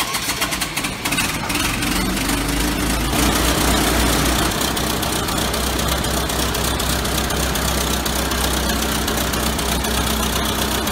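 WW1 Liberty truck's four-cylinder engine turned over on its hand crank by a 24-volt airplane starter, catching about a second in and settling into a steady idle.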